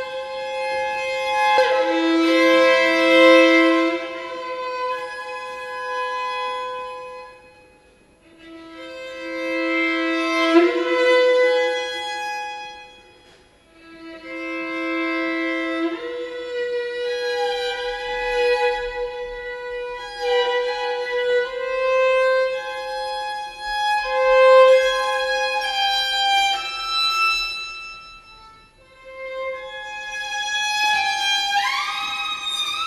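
Solo viola playing slow, sustained bowed notes, often two strings at once (double stops). The lower note twice slides upward to the upper one. The phrases are separated by brief pauses at about a quarter, half and the very end of the stretch.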